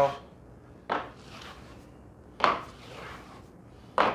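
Plastering trowel scraping over a freshly laid skim coat of multi-finish plaster during the first trowel-over: two strokes about a second and a half apart, each starting sharply and trailing off into a softer scrape.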